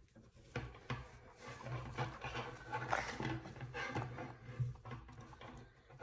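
Faint rustling and scraping of burlap ribbon being wrapped around a wire wreath frame, with a few light handling knocks.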